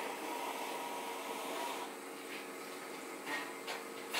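Quiet room background with a faint steady hum, and two brief faint sounds near the end.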